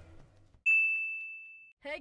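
A subscribe-button sound effect: a single bright electronic ding, one clear high tone that starts suddenly a little past half a second in and fades away over about a second.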